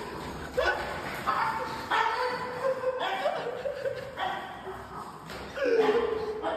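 A small pet animal gives a series of short, high, pitched cries, about one a second, with some laughter alongside.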